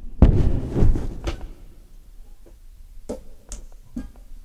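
Thumps and rustling handling noise on a handheld microphone as it is put down, loudest in the first second and a half, then a few scattered sharp clicks.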